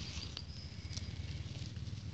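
Rustling and light crackling of grass and currant leaves as a hand moves through the plants close to the microphone, over a steady low rumble of wind or handling on the phone. A faint thin high whistle sounds in the first second.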